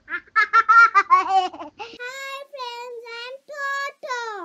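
A high-pitched cartoon child's voice: a quick run of giggles, then a few longer sing-song syllables.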